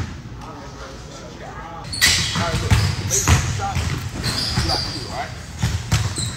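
A basketball bouncing on a hardwood gym floor, a handful of separate bounces with the loudest from about two seconds in. Voices talk at the same time in the large hall.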